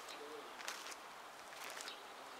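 A faint, brief, low hooting bird call near the start, over steady background noise.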